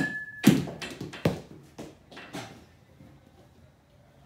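A baseball bat ringing from a soft-toss hit, the ring cutting off about half a second in, then a sharp knock and a few smaller knocks spaced about half a second apart that die away, as the tossed balls strike and bounce.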